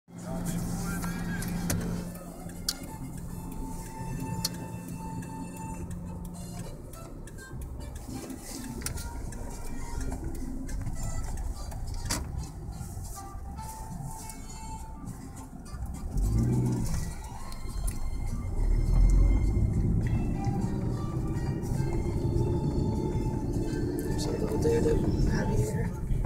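Inside a car driving slowly: engine and road rumble, with music and faint voices in the background. In the last ten seconds the engine gets louder and its pitch rises as the car speeds up.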